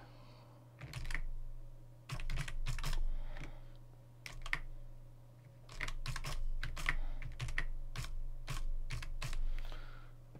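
Computer keyboard being typed on in short runs of keystrokes with brief pauses between them, over a low steady hum.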